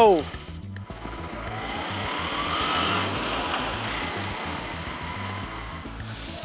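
Background music with a steady low beat, under a whooshing noise that swells and rises in pitch over the first few seconds, then slowly fades.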